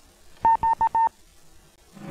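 Four quick electronic beeps at one pitch, about half a second in, the last a little longer than the rest.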